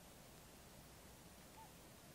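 Near silence: faint outdoor background with one very brief, faint high note late on.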